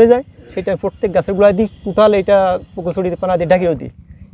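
Speech: a man talking in short phrases with brief pauses.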